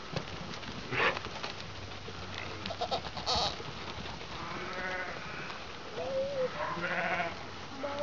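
Sheep bleating as the flock moves about, a few wavering calls in the second half.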